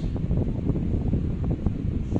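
Rough low rumble of air buffeting the microphone, with many small crackles.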